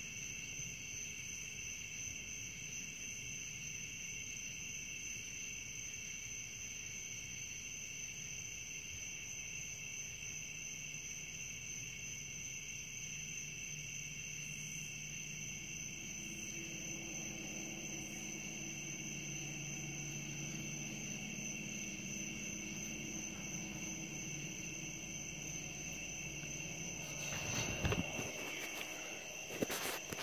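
Crickets chirping at night, a steady high-pitched trill that never lets up. In the second half a low hum swells and fades under it, and a few knocks come near the end.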